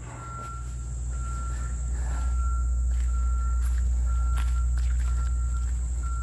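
A distant vehicle's reversing alarm beeping about once a second, each beep one steady tone, over a low rumble that grows louder in the first two seconds.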